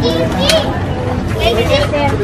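Children's voices and chatter in a busy crowd, with a brief high-pitched child's cry about half a second in.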